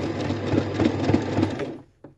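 Sewing machine running fast, its needle stitching embroidery fill into denim; it stops shortly before the end.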